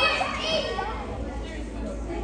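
Children's voices: a child's high-pitched call near the start, then a mix of chatter from a crowd of kids.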